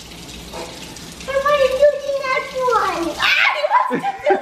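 Kitchen sink sprayer running water over a hand, joined about a second in by a child's long, high voice without words that falls in pitch near the end.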